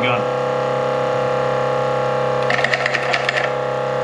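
A steady hum made of several tones, with a short burst of rapid clicking and rattling lasting about a second, starting about two and a half seconds in.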